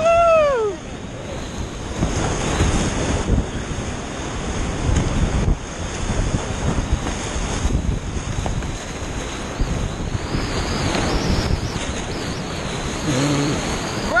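Whitewater rapids rushing and splashing close around a kayak, heard on an action camera's microphone with water and wind buffeting it.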